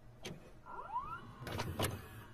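VCR tape mechanism working: a few sharp clicks, with a short motor whir rising in pitch about halfway through.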